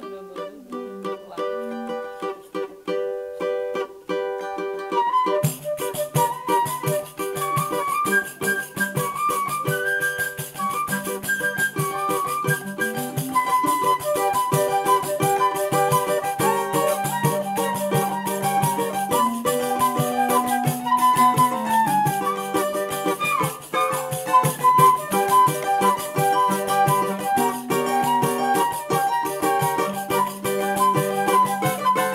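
A choro ensemble playing live: transverse flute, clarinet, pandeiro and cavaquinho. The cavaquinho plays alone for about the first five seconds. Then the pandeiro's jingles and the flute and clarinet melody come in together.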